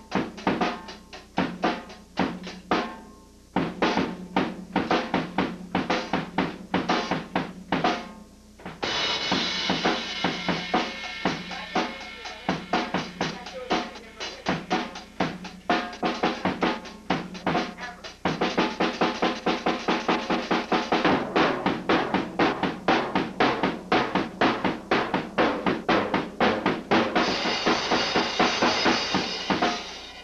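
Tama Swingstar drum kit played in a fast beat of kick, snare and tom hits. A steady wash of cymbals joins about nine seconds in, and the playing grows denser and louder through the second half.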